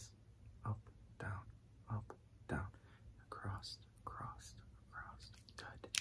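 A man's soft whispering in short, breathy bursts, about one a second, with no clear words.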